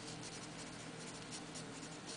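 Wooden pencil writing a word on paper: faint, irregular scratching strokes of graphite across the sheet.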